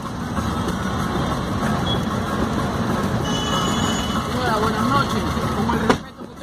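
Steady street traffic noise with faint voices in the background, and a brief faint high tone a little past the middle.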